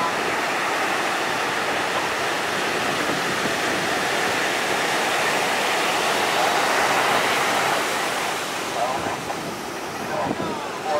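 Ocean surf: a steady wash of breaking waves and whitewater, swelling slightly in the middle and easing near the end.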